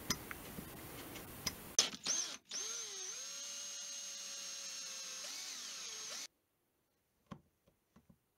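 A few light clicks and scrapes of a scribe against a steel ruler, then an electric drill whines steadily for about four seconds as it bores into a plastic guitar tremolo back plate, its pitch dipping slightly under load before it cuts off suddenly.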